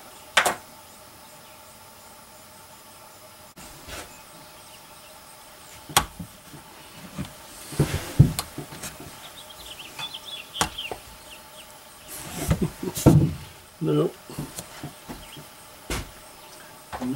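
Handling noises of a flintlock rifle at a wooden shooting bench: a few sharp clicks and knocks scattered through, the loudest about eight seconds in, and a short low mumble near the end.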